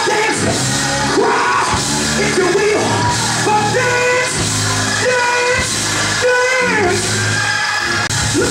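Live gospel church music with a man singing and shouting over it through a microphone, holding long notes.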